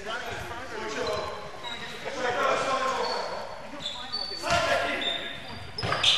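Basketball game on a wooden gym court: a basketball bouncing, with sharp impacts about four and a half seconds in and near the end, short high sneaker squeaks, and players' voices calling out.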